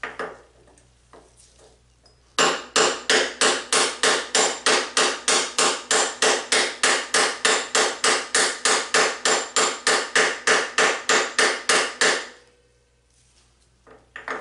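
Hammer striking a drift at a motorcycle's steering head in an even run of metallic blows, about four a second for roughly ten seconds, driving a steering-head bearing race. A few lighter knocks come before the run begins.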